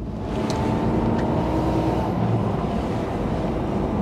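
Truck engine and road noise heard from inside the cab while driving, a steady drone with a low hum.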